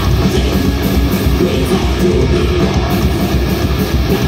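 Thrash metal band playing live: distorted electric guitars riffing over bass and fast drums, loud and dense.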